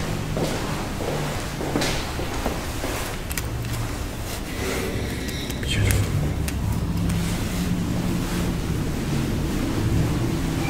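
Footsteps on a hard lobby floor over a steady low hum, then a cluster of clicks about six seconds in as the elevator's down call button is pressed.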